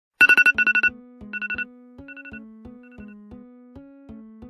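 A music track opens with a quick run of high electronic beeps like a phone alarm tone. The beeps repeat fainter and fainter three more times over about three seconds, over a steady pattern of low keyboard notes.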